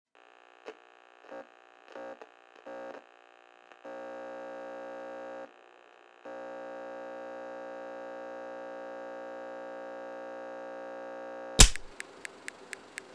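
A buzzy electronic test tone of the kind played with TV color bars. It comes first as several short blips, then as a long held tone with a short break about halfway through. A loud sharp click cuts it off near the end.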